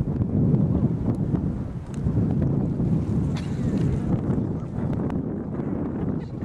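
Wind buffeting the camcorder's microphone: a continuous low rumble.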